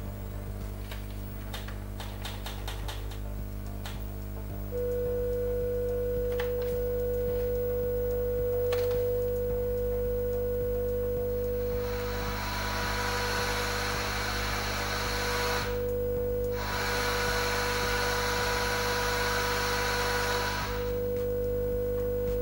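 A few button clicks, then a steady single test tone from the TV's speaker starts about five seconds in and carries on with short breaks. A hiss joins about halfway, drops out briefly and stops near the end, over a low steady hum.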